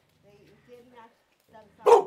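A dog barking: faint sounds for most of the moment, then a sudden loud bark just before the end.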